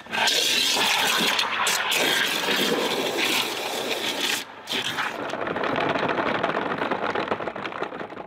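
Water from a pressure-washer lance jetting into a plastic wash bucket, filling it with a loud, steady rush that breaks off briefly about halfway through and then starts again.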